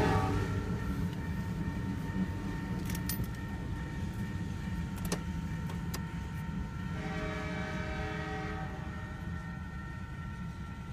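Freight train of covered hopper cars rolling past a grade crossing, a steady low rumble heard from inside a car. There are a few sharp clicks, and about seven seconds in a chord of steady, horn-like tones sounds for about two seconds.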